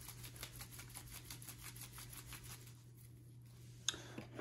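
Capped plastic conical tube of diluted culture shaken by a gloved hand, mixing the dilution: a faint, rapid, even rattle of liquid and plastic that dies away about three seconds in. A single click follows near the end.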